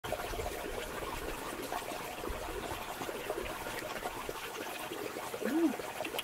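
Wet squelching and small clicks of a freshwater mussel's soft flesh being cut with a knife and pulled apart by hand, over a steady trickle of water.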